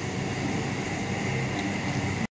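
Steady outdoor background noise, a low rumble with a hiss over it, like distant street traffic.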